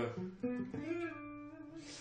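Electric guitar playing single notes: a few quick notes, then one note held for about a second that fades away.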